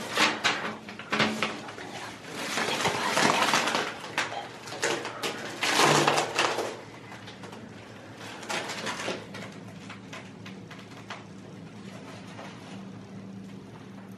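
Plastic packaging crinkling and rustling as a bag is torn open and handled, loudest in the first few seconds and dying down to quieter, scattered handling after about seven seconds.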